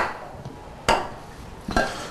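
Kitchenware knocking: a spoon or dish strikes once sharply about a second in, with a lighter click near the end.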